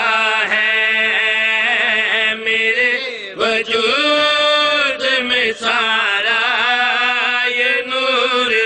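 A man chanting a devotional verse in long, wavering held notes over a steady low drone.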